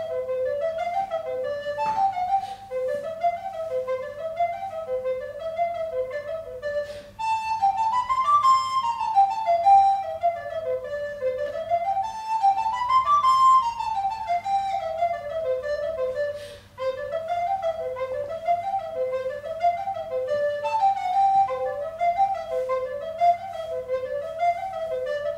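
Modern-pitch alto recorder playing a fast, running folk melody in 7/8 time, a Macedonian tune. The notes rise and fall in quick repeating figures, broken only by two short pauses for breath, about seven and seventeen seconds in.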